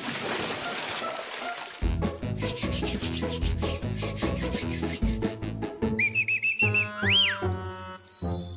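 Cartoon bath-scrubbing effect over background music: a bristle brush scrubbing in quick, even strokes, several a second, after a hiss at the start. Near the end come high squeaky notes and a whistle that rises and falls.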